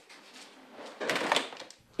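Faint rustling, then a louder scraping swish about a second in lasting about half a second: a long-handled broom sweeping across a wet concrete garage floor.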